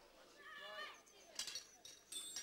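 Quiet moment with faint voices in the background and a couple of light metallic clicks from tools on the tractor being assembled.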